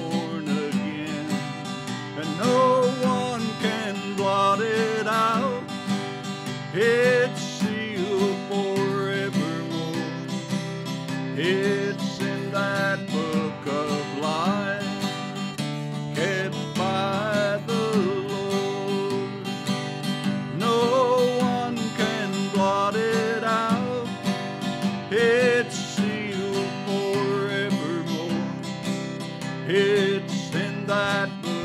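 Acoustic guitar strummed through a song, with a pitched melody line bending over the chords.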